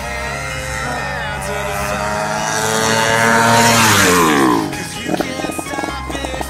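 A drag-racing motorcycle passes at full throttle. Its engine note climbs and grows loud, peaks about three and a half seconds in, then drops steeply in pitch as it goes by. Background music plays throughout.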